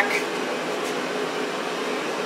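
Steady hum and hiss of a running ventilation fan, with no clicks or knocks standing out.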